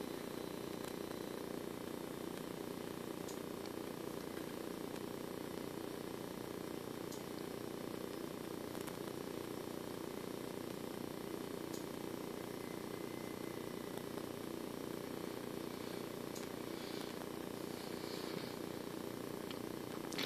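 A faint, steady low hum with no rise or fall, and a few faint ticks.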